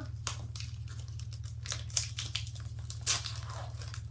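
Foil booster pack wrapper crinkling and tearing in irregular crackles as it is pulled open by hand, with one sharper crackle about three seconds in.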